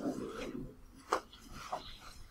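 Faint rubbing or scraping noise, then a sharp click a little over a second in and a softer one near the end.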